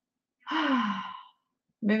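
A woman's sigh: one breathy exhale, falling in pitch, starting about half a second in and lasting under a second.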